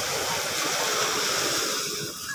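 Surf breaking on the sand beach: a steady rushing hiss of wave wash.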